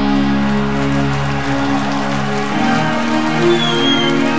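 Black metal band playing live: sustained distorted electric guitar chords over a dense noisy wash. The deep bass drops away about a second and a half in, and the chord changes about a second later.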